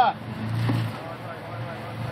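Jeep Wrangler Rubicon engine pulling under load as the Jeep crawls up a boulder. It rises for about half a second, then eases back to a low steady run.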